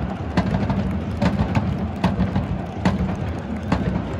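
Football supporters in the stands keeping a steady rhythm with drum beats and claps, about two to three beats a second, over a continuous low rumble.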